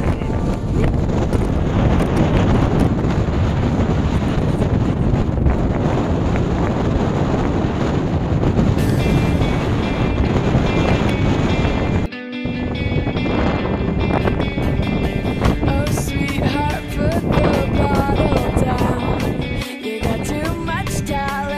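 Wind blowing hard on the microphone over breaking sea waves, a dense steady rush. About nine seconds in, music fades in; after a brief dip near twelve seconds, guitar-led music plays clearly over the sea noise.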